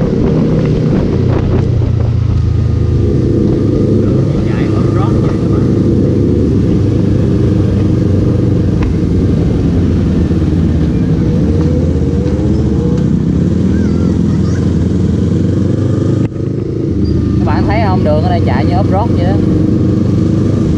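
Yamaha R15 v3's 155 cc single-cylinder engine running steadily at road speed, heard from on the bike. There is a brief dip about three-quarters of the way through.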